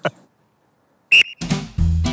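After a second of silence, a referee's whistle gives one short, high blast, the start signal for a 40-metre sprint. Background music with a steady bass beat starts right after.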